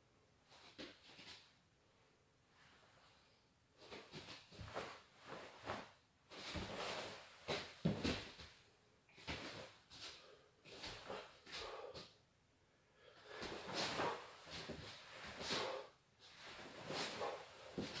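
A karate gi swishing and snapping and bare feet moving on the floor during the quick blocks and strikes of a Shotokan kata, in groups of a few sharp movements with short quiet pauses between them.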